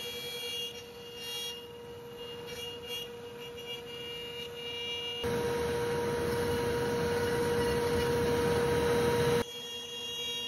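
CNC router spindle running at a steady high whine while a quarter-inch downcut bit cuts the outline of a tray through a wooden board. The cutting noise becomes suddenly louder and harsher from about five seconds in, then drops back just before the end.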